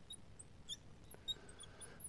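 Faint, short, high squeaks of a marker writing on a glass lightboard, several small chirps spread through the stroke-by-stroke writing.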